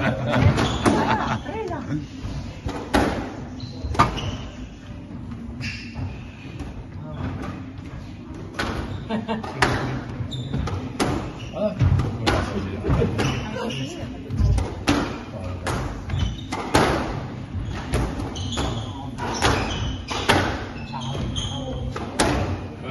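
A squash rally: the rubber ball smacking off the racket strings and the court walls in sharp knocks roughly every second, ringing in the enclosed court, with players' footfalls on the wooden floor.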